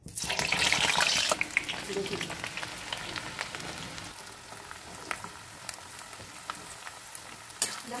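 Hot coconut oil in a steel wok sizzling and spluttering as slices of aloe vera and red flower petals are dropped in: a loud hiss at once that settles over a few seconds into a lower crackling sizzle with scattered pops, flaring up again near the end as more leaves go in.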